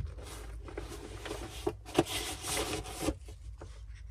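Trend powered respirator hood being handled and put on: plastic rustling and rubbing with a few sharp clicks, over a low steady hum.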